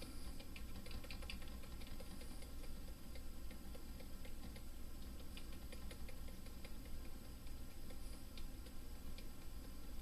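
Faint, irregular clicking of computer input as waypoint letters are dialed into a Garmin GNS430 simulator program, over a low steady hum.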